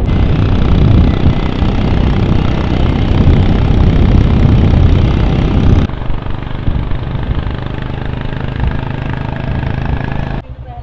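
Motorcycle running at road speed: loud engine and road noise for about the first six seconds, then suddenly quieter with a steady engine hum.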